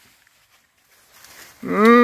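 About a second and a half of near silence, then a person's loud, drawn-out vocal groan that starts near the end, its pitch bending up and down.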